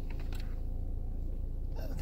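Steady low hum of the 2013 Ford Escape's engine idling, heard inside the cabin; the meter reads 14.6–14.7 volts, so the alternator is charging. A couple of faint clicks come from the meter probes at the fuse box.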